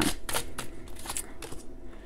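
Oracle cards being handled: a few short papery swishes and slides as a card is drawn from the deck and laid on the table, most of them in the first half-second and one more about a second in.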